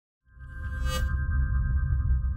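Electronic intro sting for a news logo: after a brief silence a low pulsing bass swells in under held, ping-like high tones, with a bright shimmer about a second in.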